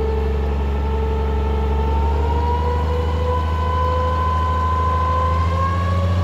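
Bedford 4.9-litre straight-six engine of a Green Goddess fire engine running steadily while driving its water pump at part power, drawing water through the suction hose. From about two seconds in its pitch rises slowly as the engine speeds up.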